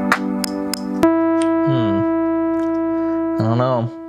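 Teenage Engineering OP-1 synthesizer playing a beat with evenly spaced ticking hi-hats over chords. About a second in, the beat cuts off and a single synth note is held steady, a texture preset being tried out.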